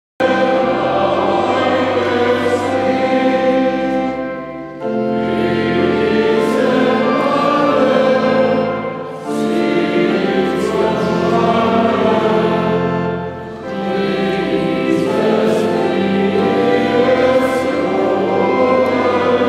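A choir singing slow, sustained chords in long phrases, with three brief breaks between phrases about every four to five seconds.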